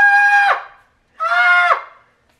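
A man screaming "Ah!" at a high pitch, twice, each scream held about half a second, the second a little lower.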